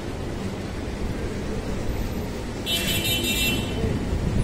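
Street traffic noise: a steady low rumble of passing vehicles, with a brief shrill tone a little under three seconds in.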